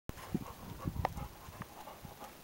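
A golden retriever giving about four short, low woofs, close together, one with a sharp edge about a second in.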